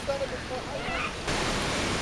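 Steady wash of ocean surf and wind on a beach, with faint voices of people in the distance. A little past halfway the hiss turns brighter and wider.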